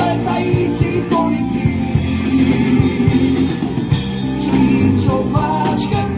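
Live rock band playing loud with electric guitars, bass and a drum kit keeping a steady beat, and a male vocalist singing over it.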